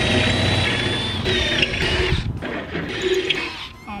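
Cordless drill boring into wood through a Kreg pocket-hole jig: it runs for about two seconds with a high whine that sags under load, stops, then runs again briefly.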